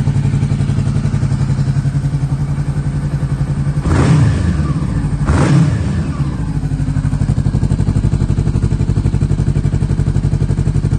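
2015 Honda CB500F's parallel-twin engine idling through an aftermarket Black Widow exhaust, with two quick throttle blips about four and five and a half seconds in, each revving up and dropping straight back to idle.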